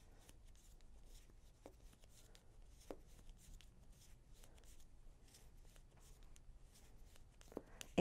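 Faint soft ticks and rustling of bamboo knitting needles and wool yarn as stitches are knit across a row, with a few slightly sharper clicks.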